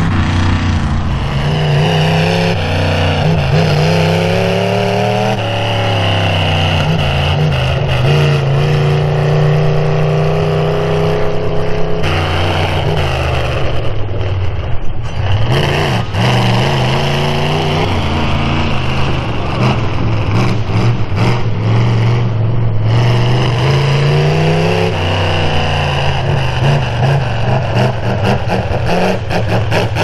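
Mega truck engines revving hard, their pitch climbing and dropping again and again as the trucks throttle through a dirt obstacle course. A few sharp knocks stand out about halfway through.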